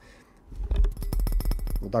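Fingers rapidly scratching and tapping on the body of a Fifine AmpliGame A8 USB condenser microphone, picked up by the microphone itself as handling noise with a low rumble. It starts about half a second in, a fast run of about fifteen small clicks a second.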